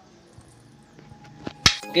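Mostly quiet, then a single sharp clack near the end: a metal fork striking the serving bowl while mashing boiled potatoes.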